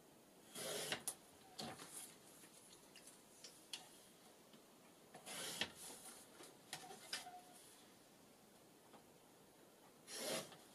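Faint paper-crafting sounds of scissors cutting paper tags out of a sheet: three short crisp rustling snips with light clicks of the blades and paper between them.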